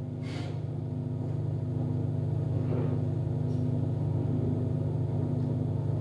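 A steady low hum, with a faint tone above it, rising slightly in level.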